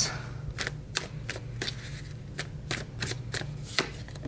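A tarot deck being shuffled by hand: a quick, irregular run of light card slaps and riffles, about three or four a second.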